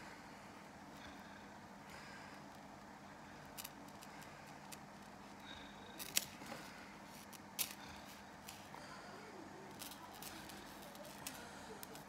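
Faint scattered clicks and light taps from hands handling a thin chain and small pieces on a wooden table, over a steady low hum. The sharpest clicks come about halfway through.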